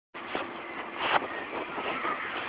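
1997 Volkswagen Jetta GT's 2.0-litre ABA four-cylinder engine idling steadily, with two brief knocks about a third of a second and a second in.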